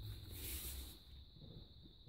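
Faint rustle of thick, backed fabric strips being handled and laid down on a table, mostly in the first second or so.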